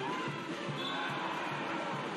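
A basketball dribbled hard on a hardwood court, a thud about three or four times a second, over steady arena crowd noise.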